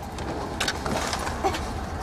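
Steady low vehicle rumble heard from inside a car, with a few faint clicks and rustles.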